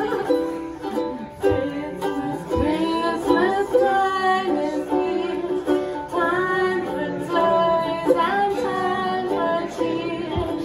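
A woman singing a slow melody with held notes while accompanying herself on a ukulele.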